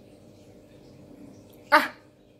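A single short dog bark about three-quarters of the way through, over faint room tone.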